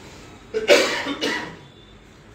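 A person coughing twice in quick succession, the first cough the louder.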